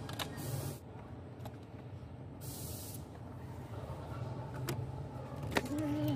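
Plastic dashboard trim panel of a car being handled and moved into place: a few light clicks, then a sharp click near the end followed by a brief squeak, over a steady low hum. Two short bursts of hiss come about half a second in and again about two and a half seconds in.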